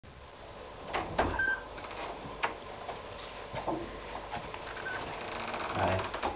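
Scattered knocks, clicks and footsteps in a small hard-walled room as two people walk in, loudest about a second in and again at about two and a half seconds.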